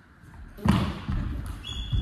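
Badminton rally on a wooden court: a sharp racket hit on the shuttlecock about two-thirds of a second in, then heavy footsteps thudding on the floor and a brief shoe squeak near the end.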